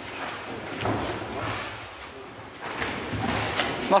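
Bare feet shuffling and stepping on a canvas ring floor during sparring, with a few dull thuds. The sound comes in two stretches, about a second in and again near the end.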